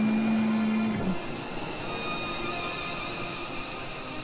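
F-16 jet engine running with a steady high whine as the fighter taxis. A held low musical note ends about a second in.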